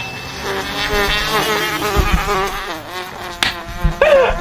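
A small hatchback's engine buzzing at high revs as it drives past, the pitch wavering up and down, with a sharp click near the end.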